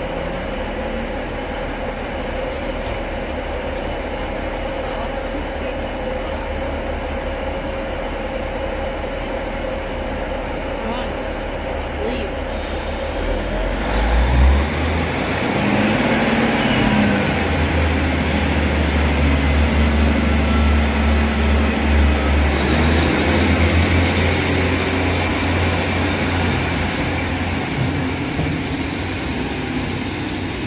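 ScotRail Class 156 diesel multiple unit idling at the platform with a steady engine hum, then its diesel engines rev up about halfway through as it pulls away: a deep drone that grows louder and eases off near the end.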